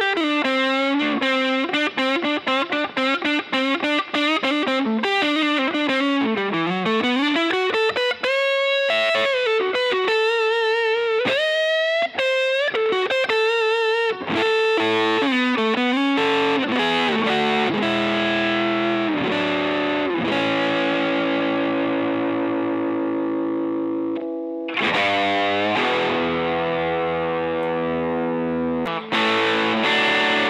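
Wildcustom Wildone electric guitar with a Seymour Duncan pickup, played with an overdriven tone. The first half is single-note lead lines with string bends and vibrato; the second half is sustained, ringing chords.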